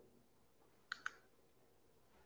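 Near-silent room with two quick, light clicks a little after a second in, as a presentation slide is advanced.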